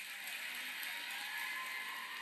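Studio audience applause, a dense steady clatter that swells in right at the start, heard through a television's speaker.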